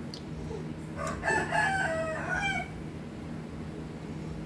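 A rooster crowing once, a single call of about a second and a half starting about a second in, over a steady low hum.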